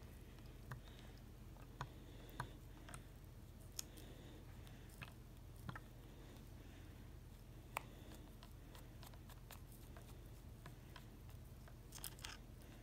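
Near silence with a few faint, scattered clicks a second or two apart: a plastic pipette stirring water in a small plastic tank and tapping against it while salts dissolve.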